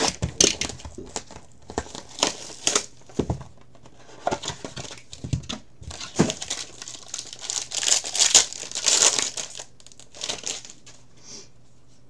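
Plastic wrapping of a sealed trading-card box and its pack being torn open and crumpled by hand: irregular crinkling and crackling with short tearing bursts, loudest about eight to nine seconds in.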